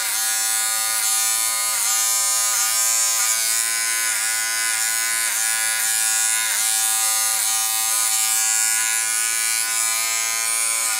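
Small Wahl electric hair clipper buzzing steadily as it is run through short hair at the nape, its pitch dipping briefly every second or so.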